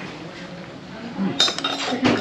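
A slotted metal ladle lifting a block of tofu out of a hot pot strikes the dish once, a sharp metallic clink with a short ring about one and a half seconds in.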